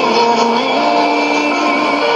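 Music from a shortwave AM broadcast playing through a Sony ICF-2001D receiver's speaker. Held notes step from one pitch to the next over a steady bed of static hiss.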